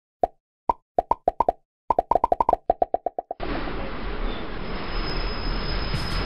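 Intro sound effects: a run of about twenty short pitched plops alternating between two notes, coming faster and faster, then a steady rushing noise with a low rumble from a little past the middle.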